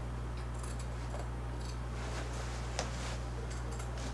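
Scissors cutting through denim around a jeans back pocket: a series of faint snips, one sharper near three seconds in, over a steady low hum.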